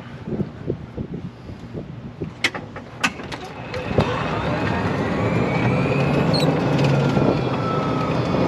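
2017 E-Z-GO RXV electric golf cart with an aftermarket speed controller pulling away from a stop about four seconds in. Its electric motor whine rises in pitch as it speeds up to about 18 mph, over a growing rush of noise. A few sharp clicks come before the takeoff.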